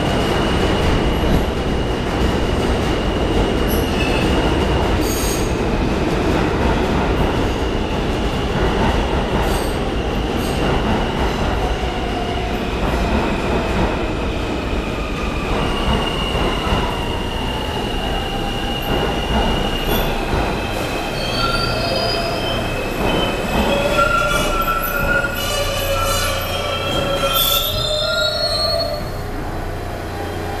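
An R160-series New York City subway train pulls into the station and slows, its wheels squealing against the rails over a steady rumble. Midway a whine falls in pitch as the train loses speed. Near the end several squeal tones pile up before it settles to a low steady hum as it comes to a halt.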